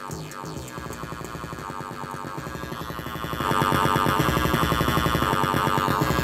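A distorted, 808-like sampled bass loop is retriggering rapidly from a shortened loop region in a software sampler, giving a fast stuttering repeat. About three and a half seconds in it becomes louder and brighter.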